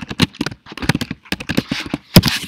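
Typing on a computer keyboard: a quick, uneven run of sharp key clicks as a short word is typed.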